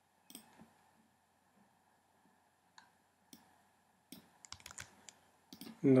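Clicks of a computer mouse and keyboard. A few single sharp clicks come a second or more apart, then a quick flurry of clicks begins about four seconds in.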